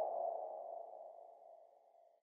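A single sustained electronic tone, a mid-pitched ringing note, fading away until it is gone about one and a half seconds in.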